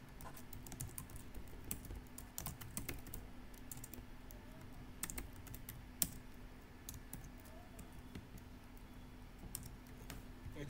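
Typing on a computer keyboard: irregular keystrokes, some in quick runs, with one sharper click about six seconds in, over a faint steady hum.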